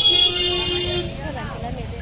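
A vehicle horn sounding one steady note for about a second, over the chatter of people in the street.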